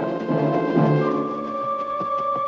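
Orchestral background music: held chords with timpani, and a new higher note entering about a second in.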